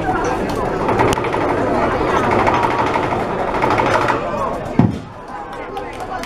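Crowd chatter of many diners talking at once in a large banquet hall. A single low thump sounds nearly five seconds in, after which the chatter is quieter.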